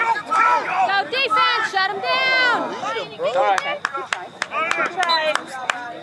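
Several voices shouting and yelling over the play. From about three and a half to five and a half seconds in comes a quick run of sharp clacks: lacrosse sticks striking each other and the ball.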